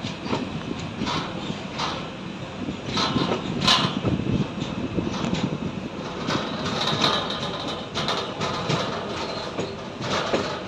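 Passenger train coaches running over a rail bridge, heard from an open coach doorway: a steady rumble of wheels on the rails with irregular sharp clicks and clanks.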